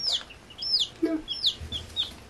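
Baby chicks, about five days old, peeping in a brooder: a run of short, high chirps that arch up and drop in pitch, a few every second.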